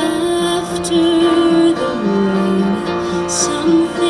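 A woman singing with piano accompaniment: long held notes over the keyboard's chords.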